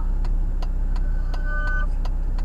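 Car turn-signal indicator ticking steadily, about two to three clicks a second, over the low hum of an idling engine inside the cabin. A short steady tone sounds about a second in.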